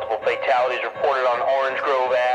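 A voice with a thin, radio-like tone over the music of the soundtrack.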